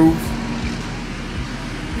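Steady low background motor hum with a faint held drone, with no distinct events.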